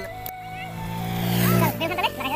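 A motor vehicle's engine running steadily and growing louder as it approaches, cut off sharply near the end.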